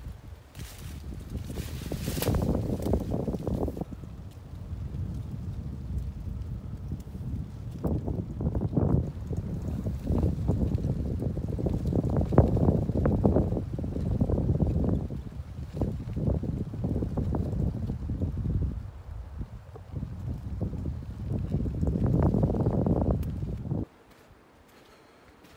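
Wind buffeting the camera's microphone in gusts, a low rumbling rush that swells and fades every second or two, cutting off abruptly at the end.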